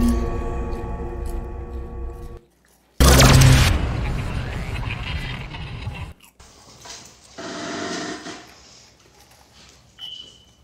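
Logo-intro music and sound effects: a held musical chord fades out and cuts to a moment of silence. A loud impact hit with a whoosh comes about three seconds in and dies away over several seconds, and a fainter swell of tones follows later.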